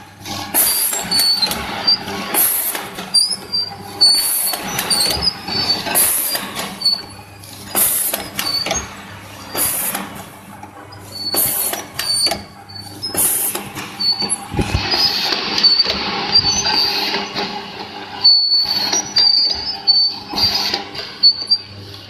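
Small vertical sachet packing machine (HTL-400) running, its sealing and cutting stroke repeating with a sharp sound about every two seconds. Lighter clatter and short high squeaks come between the strokes, over a steady hum.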